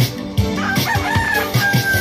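A rooster crowing, a broken call that starts a little under a second in and ends in a long held note, over dance music with a steady beat.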